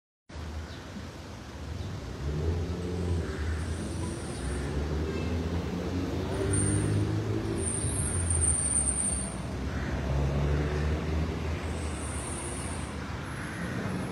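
Street traffic at an intersection: car and SUV engines running and tyres on asphalt as vehicles pass and turn, swelling and fading, with a few brief high hisses.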